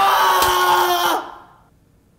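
A man screaming, one long high-pitched yell that cuts off a little over a second in.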